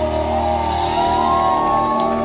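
Live rock band playing: electric guitars, bass and drums, with several long notes held and slowly bending over a steady low drone.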